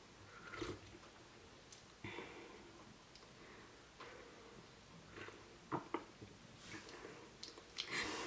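Faint sips of hot coffee taken from a mug, with soft mouth sounds and a couple of small clicks about two-thirds of the way through.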